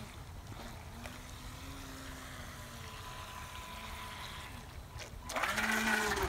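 Small RC speed boat's electric motors whining faintly as it runs on the water, the pitch wavering with the throttle. The sound grows louder near the end as the boat comes close.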